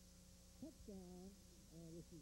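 Faint human voice, a few short calls with falling pitch about half a second in and again near the end, over a steady faint hum.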